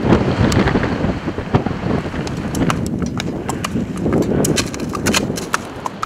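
A horse walking on a road, its hooves clip-clopping in quick irregular knocks over a steady rushing noise.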